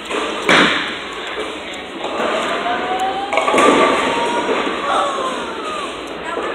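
A bowling ball thuds onto the lane and rolls away, then crashes into the pins about three seconds later.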